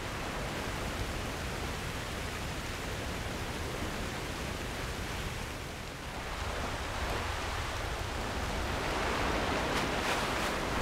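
Steady rushing noise, like wind or moving water, from a promotional film's soundtrack. It dips about six seconds in and swells again near the end.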